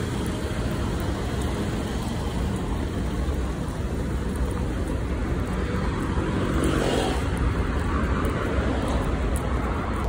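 Busy city street ambience: steady road traffic noise with a low rumble.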